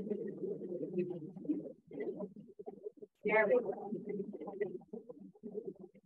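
Food processor running in short pulses, churning a sticky date-and-cacao dough that is being worked until it forms a ball. It runs steadily for under two seconds, then in several short spurts, with a brief voice a little past halfway.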